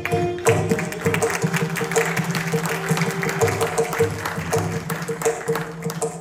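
Audience applause over a mridangam keeping up a steady rhythm, just as a held bamboo-flute note ends at the start.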